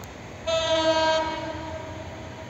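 Horn of an EMD GT42ACL diesel-electric locomotive, No. 6614, sounding one blast about a second long. It starts suddenly half a second in and dies away over the next half second.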